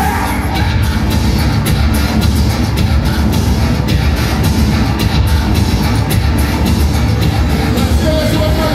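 Industrial metal band playing live at full volume: dense, continuous music with heavy bass and a steady run of drum hits.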